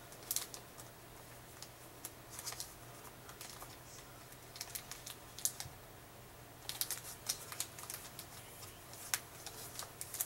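Faint, irregular crinkles and light clicks of plastic being handled as a trading card's plastic holder is sealed shut, coming in small clusters with short pauses between.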